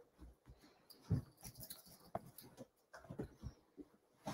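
Faint, scattered rustles and soft bumps from a large quilt being handled and spread over a sewing table.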